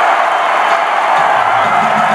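A large crowd of students cheering and clapping in a dense, steady wash of noise. From about a second in, a faint low voice or chant can be heard underneath.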